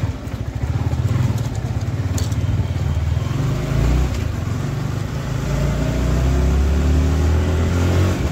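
Sport motorcycle's engine running as it is ridden slowly, its note rising over the last few seconds.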